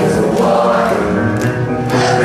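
Live rock band playing loudly with many voices singing together, typical of a concert crowd singing along with the band.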